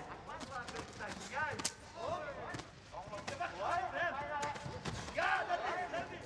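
Cornermen shouting instructions during a kickboxing fight, with sharp thuds and slaps of kicks and punches landing several times.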